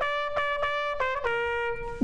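Trumpet playing a short phrase: several short tongued notes on the same pitch, then a step lower to a held note about a second in.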